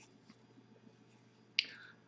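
Near silence with a few faint ticks. About a second and a half in there is a sharp mouth click, then a short in-breath before speaking.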